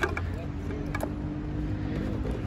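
Plastic and rubber toys knocking together as a hand rummages through a box of them: a few light clicks, one near the start and one about a second in, over a steady low outdoor rumble.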